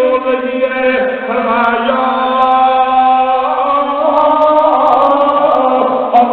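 A man's voice chanting in long, drawn-out melodic lines: a preacher's sung recitation through a microphone.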